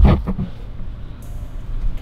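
Handling noise from a handheld camera being moved: a single sharp knock at the start, then a low rumble with faint rustling.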